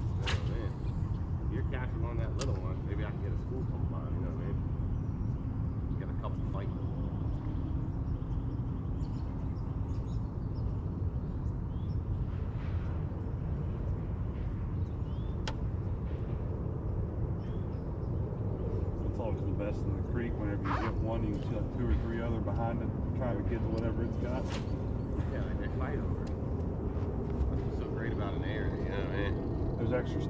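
Steady low rumble of wind and boat noise on a boat-mounted camera's microphone, with a few faint clicks. Indistinct murmured speech comes in during the last third.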